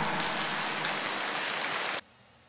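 A large seated audience applauding: a steady patter of many hands clapping that cuts off suddenly at the end.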